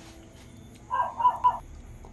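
An animal call: three short notes in quick succession about a second in, over faint room tone.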